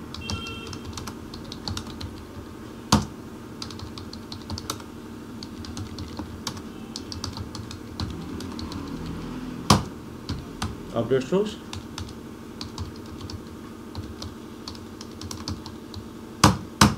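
Computer keyboard typing: quick, irregular keystrokes as lines of router configuration commands are entered, with two louder key strikes about 3 and 10 seconds in.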